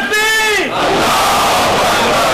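A congregation of men chanting slogans in unison. A long held shouted call falls in pitch and breaks off about half a second in, and the crowd's mass shout fills the rest.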